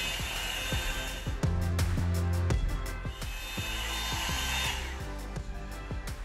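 Handheld hair dryer brush blowing with a steady fan whine, on for about the first second and again for about two seconds in the second half. Background music with a steady beat runs throughout.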